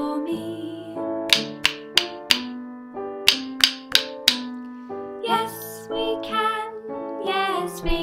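A children's song with keyboard accompaniment, with two wooden rhythm sticks struck together in two groups of four quick taps, playing back a word rhythm. A woman's singing comes in during the second half.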